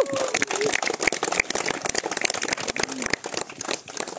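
A small crowd applauding: fast, dense hand claps that thin out near the end.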